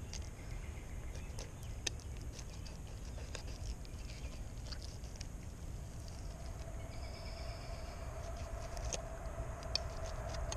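Knife cutting a fluke fillet on a cutting board: faint scattered clicks and scrapes of the blade against the fish and board. A steady hum comes in about seven seconds in.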